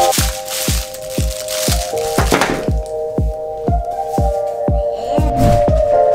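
Background music with a steady beat: a kick drum about twice a second under held chords. A brief rustle of plastic packaging about two seconds in.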